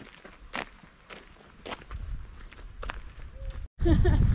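Footsteps on a gravel track, about two steps a second, with a low rumble building from about halfway; the sound drops out briefly near the end.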